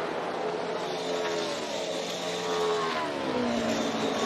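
A NASCAR Cup Series stock car's V8 engine at full racing speed. Its note holds steady, then falls in pitch a little past halfway through.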